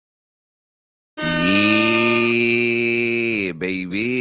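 A man's voice holding one long drawn-out call for about two seconds, starting about a second in after dead silence, then breaking into speech near the end.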